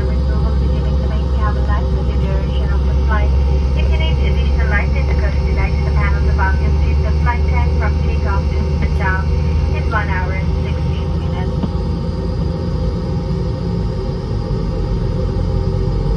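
Steady low cabin drone of a Boeing 717 on the ground, its two rear-mounted Rolls-Royce BR715 engines at idle, with a steady hum running through it. Voices are heard over the drone for most of the first eleven seconds.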